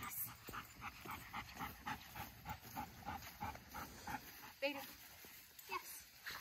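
Dog panting quickly and steadily, about three to four breaths a second.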